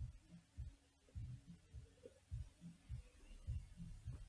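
Faint, irregular low thuds of handling noise near the microphone, about three a second.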